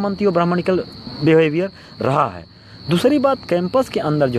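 A man talking, with a thin, steady, high-pitched insect trill going on behind his voice.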